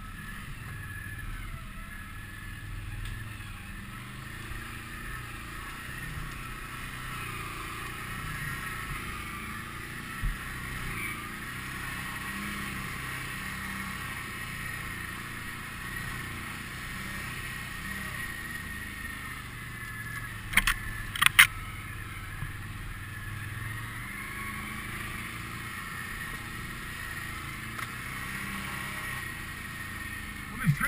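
Can-Am Outlander 650 ATV's V-twin engine running steadily at low trail speed. A few sharp knocks come about two-thirds of the way through.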